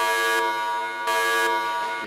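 Loud edited-in horn or buzzer sound effect: a steady buzzing tone with a brighter blast at the start and another about a second in, cutting off suddenly at the end.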